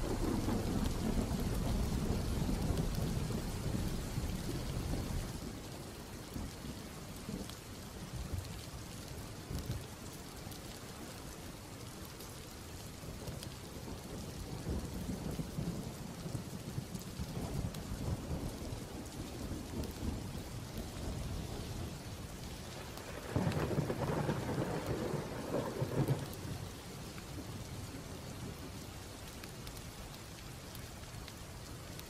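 Steady rain with rolling thunder: a long rumble that dies away over the first five seconds, and another, louder peal of thunder about twenty-three seconds in that lasts a few seconds.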